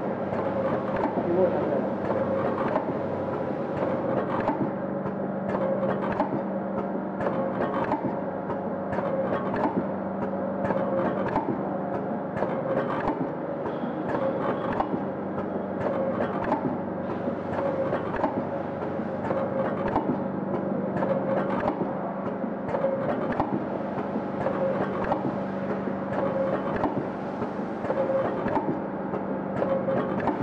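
Vertical stick-bag packing machine running, with a steady hum and a regular clacking from its sealing and cutting cycle.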